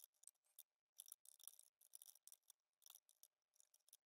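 Near silence, with a few very faint clicks of typing on a computer keyboard.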